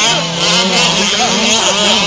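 Several 1/5-scale gas RC trucks' small two-stroke engines running at once, their overlapping notes rising and falling as the throttles open and close.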